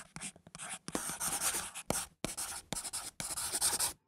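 A quick run of irregular scratchy strokes, like a pen scribbling on paper, some short and some longer, with brief gaps between them.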